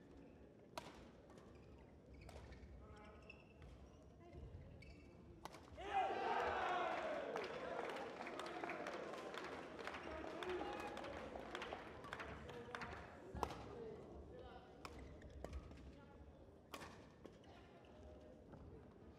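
Badminton rally: sharp, separate strikes of rackets on the shuttlecock a second or two apart. Voices rise in the hall for several seconds in the middle of the rally.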